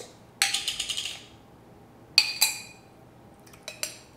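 The lid of a glass jar of sweet relish being twisted off with a short gritty scraping rattle, then two sharp knocks and a few light clinks of a utensil against the glass jar.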